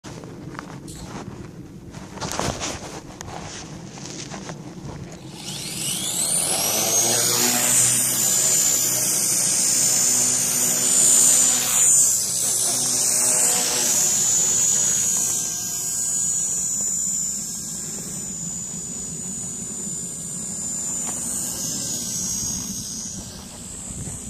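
Walkera Master CP micro electric RC helicopter: its motor whine rises sharply about five seconds in as the rotor spools up, then holds as a high steady whine over the buzz of the blades while it flies, easing a little in the second half.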